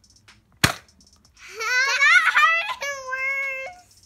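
A Nerf blaster fires once with a sharp snap about half a second in. About a second later a child lets out a long, high-pitched cry that rises and wavers, then holds steady, in pain from the dart hit.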